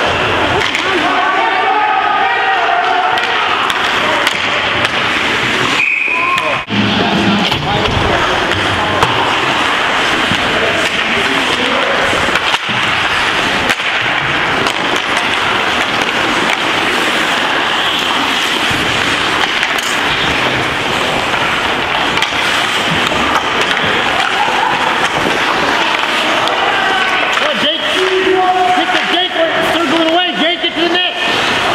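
Ice hockey rink during play: spectators' voices over the scrape of skates on the ice and the clacks of sticks and puck. There is a short high tone about six seconds in.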